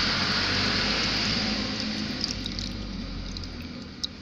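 Water running steadily into a fish pond, a continuous rush with a low hum underneath, growing quieter over the last two seconds.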